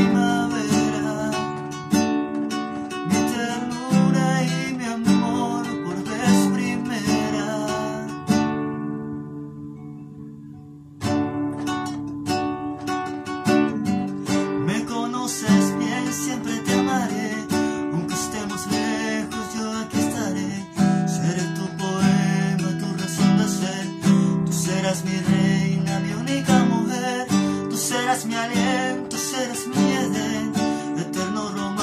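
Cutaway acoustic guitar strummed in a slow ballad accompaniment. About eight seconds in, a chord is left ringing and fades away, and the strumming starts again about three seconds later.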